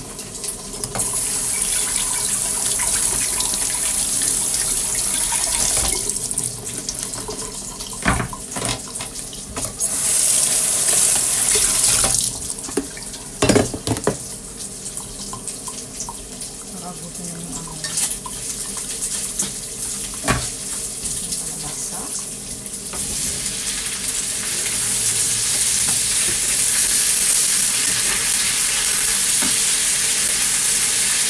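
A kitchen tap running in spells as cubed squash is rinsed in a plastic colander, with a few knocks. From about three-quarters of the way through, the squash sizzles steadily in a hot frying pan as it is stirred.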